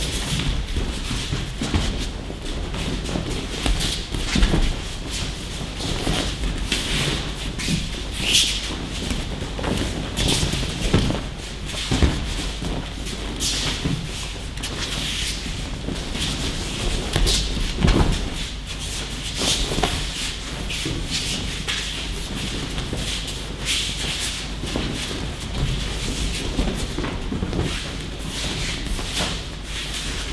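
Aikido practitioners taking falls and rolls on training mats: irregular thuds of bodies hitting the mat, mixed with bare feet shuffling and the swish of gi and hakama cloth.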